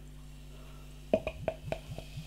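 Beer glugging out of a glass bottle's neck into a tilted glass. After a quiet first second comes a quick run of about five glugs, each with a short rising pitch.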